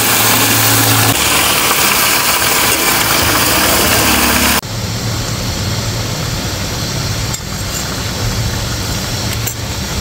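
Chicken pieces sizzling in hot oil with fried onion and garlic in a steel pot as they are stirred with a ladle, over a steady low rumble. The hiss drops sharply about halfway through.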